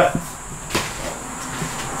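Quiet room sound with a single light knock about three-quarters of a second in, and a few fainter ticks under a faint steady high whine.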